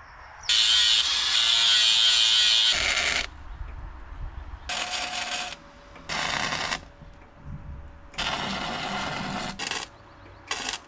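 Arc welding on the car's rusted sheet metal: a long crackling weld burst about half a second in, the loudest, then several shorter bursts with pauses between them.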